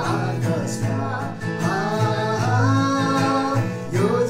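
Steel-string acoustic guitar strummed steadily while a man and a woman sing a Christmas carol together.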